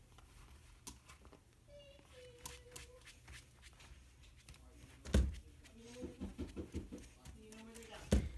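Faint rubbing of a polishing cloth wiped across an iPad's glass screen, with one thump about five seconds in. A faint voice is heard near the end.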